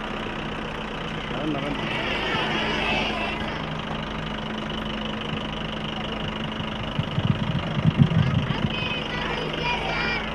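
Open parade jeep's engine running at low speed, a steady low hum under outdoor ambience, with a few brief low rumbles about seven seconds in.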